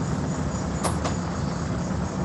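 Steady low rumbling background noise, like passing traffic or a running machine, picked up through a video-call microphone. Two brief clicks come close together about a second in.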